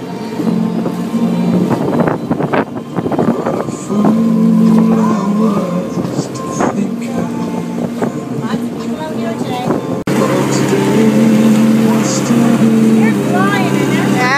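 A motorboat's engine running steadily under way, a low drone over the rush of wind and water. The sound cuts abruptly about ten seconds in, after which the drone is steadier.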